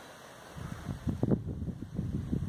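Wind buffeting the microphone: an uneven low rumble that starts about half a second in.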